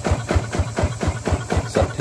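Kubota ZT155 single-cylinder diesel engine running at a low idle, its firing strokes coming as an even knock about five or six times a second.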